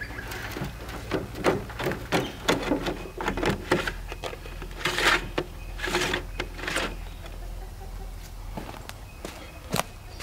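Compost tipped off a shovel into a rolling sifter's wire-mesh drum, followed by irregular clattering and scraping as the metal drum is handled, then a single sharp knock near the end.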